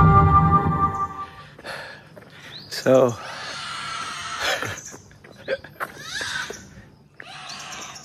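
Wordless cries and squeals from a small child, coming in several short outbursts, the loudest about three seconds in. In the first second the tail of soft ambient intro music ends.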